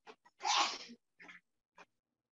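A man's short, stifled sneeze, a single noisy burst of breath about half a second in.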